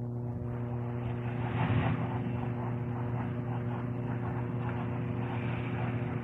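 A steady hum of several fixed tones over an even rushing noise, swelling a little about one and a half to two seconds in.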